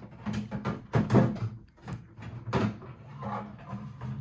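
Wooden drawer being fitted into a newly assembled IKEA chest of drawers: a series of irregular knocks and clacks as it is worked onto its runners and into the frame.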